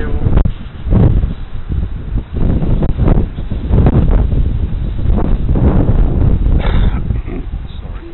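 Wind buffeting the microphone: a loud, low, irregular rumble that swells and drops throughout.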